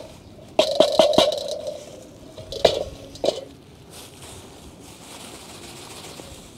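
Metal knocks and clanks from a small portable charcoal barbecue being handled while its burnt remains are cleared into a plastic garbage bag: a quick cluster of knocks with a short ringing about half a second in, two single knocks a couple of seconds later, then only faint handling noise.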